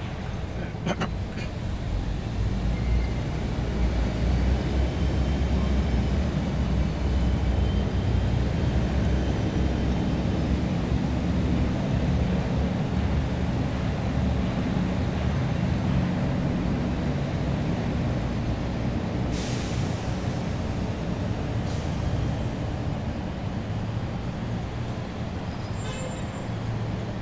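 Steady road-traffic rumble from buses and other vehicles, growing louder a few seconds in and easing near the end. A short hiss comes about three-quarters of the way through.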